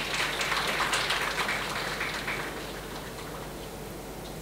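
Audience clapping, a dense patter of handclaps that dies away about three seconds in.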